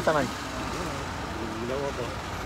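Voices of bystanders talking in short, faint snatches over a steady low background hum.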